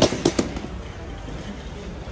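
A cardboard box dropped into a metal wire shopping cart: three quick, sharp knocks in the first half second, then a low steady hum of the warehouse store.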